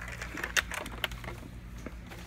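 A few sharp plastic clicks and knocks as a hollow plastic toy blaster is picked up and handled, the loudest about half a second in. A steady low hum runs underneath.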